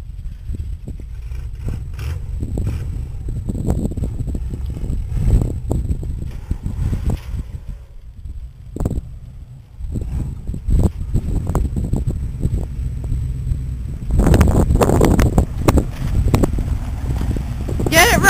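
Chevy 4x4 pickup's engine running as the truck works on a steep sand hill, heard as a low rumble from a distance. It drops away about halfway through, then grows louder near the end as the truck drives up close.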